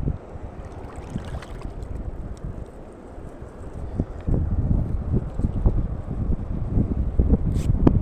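Wind buffeting the microphone: a low rumble that gets louder and gustier about halfway through, with a few faint clicks near the end.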